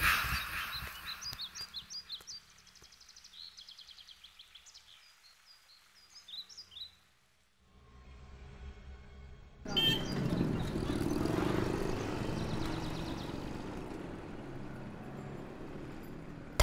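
Small birds chirping faintly in short high notes for the first several seconds. After a moment of silence, steady street noise with vehicle sound takes over and is the loudest part.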